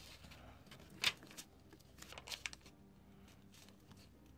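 A sheet of origami paper faintly rustling and crinkling as it is folded and creased by hand on a table. There is a short crinkle about a second in and a few more a little after two seconds.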